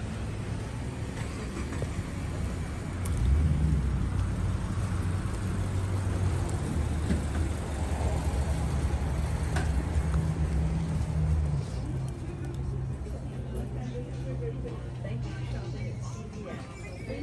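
Low, steady rumble of a motor vehicle engine running, loudest from about three seconds in and easing off near twelve seconds.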